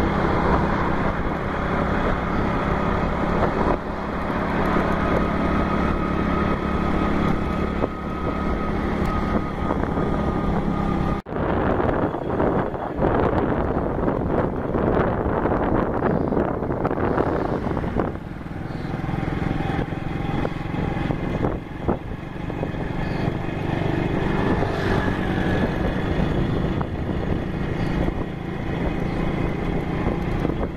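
Engine and road noise from a moving vehicle, steady and continuous. It breaks off for an instant about eleven seconds in and comes back rougher and more gusty.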